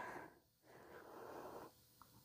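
Near silence: room tone, with a faint breath lasting just under a second, about a second in.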